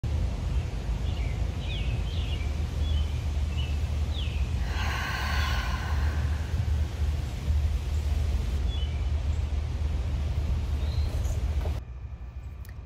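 A long, audible exhale about five seconds in, over a steady low rumble outdoors, with birds chirping in short bursts near the start and again near the end.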